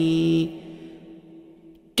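A voice chanting Vietnamese verse in the traditional ngâm style holds a steady note that ends about half a second in. A faint fading tone lingers, then there is a short pause before the next line.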